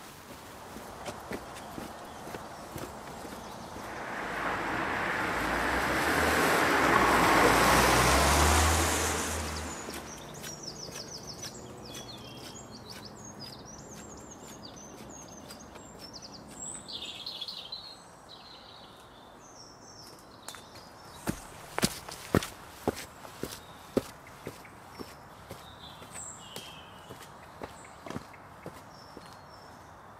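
Outdoor walking ambience: a loud rushing noise swells and fades a few seconds in, birds chirp through the rest, and from about twenty seconds in a run of sharp footsteps climbs a flight of steps.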